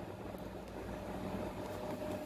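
Low steady background hum and hiss: room tone.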